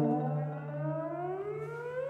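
Euphonium playing a slow, smooth upward glissando, its pitch rising steadily through more than an octave, over a fainter held low note.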